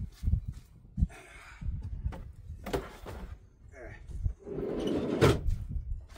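Footsteps on gravel and the knocks and rustles of a plastic oil drum being picked up and carried, the loudest knock near the end, over a low uneven rumble.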